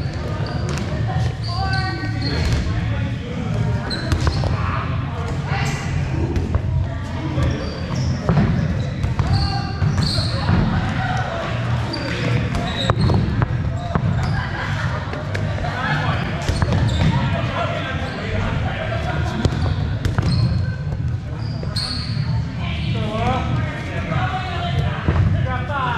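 Rubber dodgeballs thudding off the floor and players, with short sneaker squeaks and unintelligible shouting from players, all echoing in a large gymnasium.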